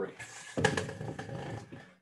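A man's long, audible breath, loudest at the start and fading over about a second and a half, taken during a guided seated stretch.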